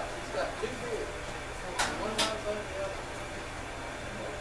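Electric potter's wheel running with a steady low hum while clay is shaped on it, under faint background talk.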